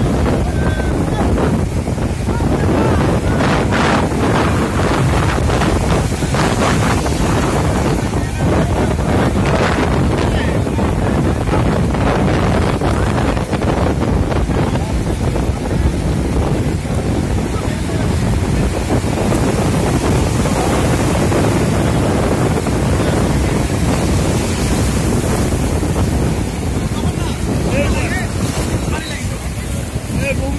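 Sea surf breaking and washing through the shallows, with strong wind buffeting the microphone, a steady loud rush throughout.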